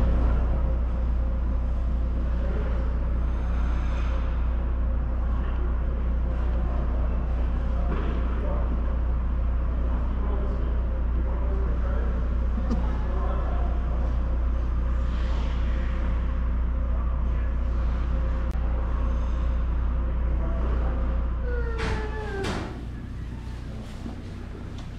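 Ice-rink ambience: a loud, steady low hum with faint distant voices and skating sounds on the ice. Near the end the hum drops away.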